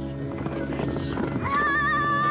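Horses galloping, a rapid jumble of hoofbeats on dirt, with a horse whinnying about halfway, laid over background music; a high, wavering melody enters in the music near the end.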